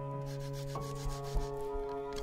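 Kitchen knife slicing a garlic clove on a cutting board: a series of light cuts and taps of the blade on the board, one louder tap a little past halfway, over background music with held notes.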